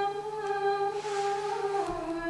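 A woman's voice singing unaccompanied, holding one long note that steps down to a lower note near the end.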